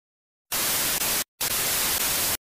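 Television static sound effect: loud, even hiss that starts suddenly about half a second in, breaks off for an instant past the one-second mark, then resumes.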